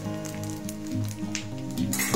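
Background music over a faint sizzle and crackle of edible gum (dink) puffing in hot ghee.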